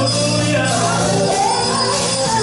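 Live gospel praise music: singing voices over a Roland RD-700SX stage piano and a drum kit with cymbals, with a held low bass note through most of it.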